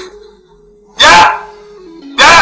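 A dog barks once, loudly, about a second in, over a steady held note of background music.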